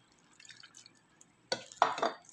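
Water poured from a plastic measuring cup over fish and vegetables in a baking pan. It is faint at first, then splashes and drips sharply in the last half second.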